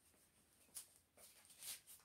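Near silence, with two faint brief rustles about a second in and near the end, as a plastic bottle is handled.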